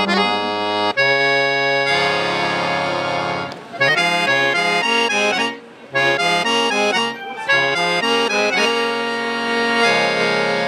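Dallapé piano accordion playing a forró tune solo, with sustained chords and changing melody notes. The playing breaks off briefly twice, about three and a half and five and a half seconds in.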